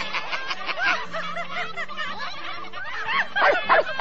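Pirate voices snickering and chuckling in quick rising-and-falling laughs over background music, the laughing getting louder and busier near the end.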